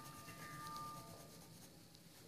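Faint scratching of a coloured pencil shading on drawing paper, with a thin steady tone in the background.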